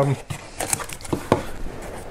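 Paper and cardboard handling: a few light scrapes and taps as a folded instruction leaflet is pulled out of the bottom of a small cardboard box.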